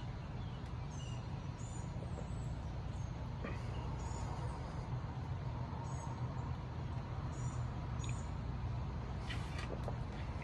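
Outdoor background: a steady low rumble with faint, short, high bird chirps scattered through it, several of them.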